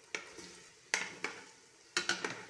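Food frying in a pan with a steady sizzle, stirred with a utensil that knocks and scrapes against the pan three or four times.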